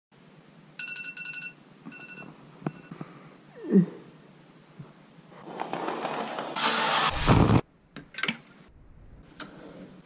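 An electronic alarm beeping in short bursts during the first couple of seconds. About halfway through comes the loudest sound: a swish of fabric curtains being pulled open, which cuts off suddenly, followed by a few light clicks.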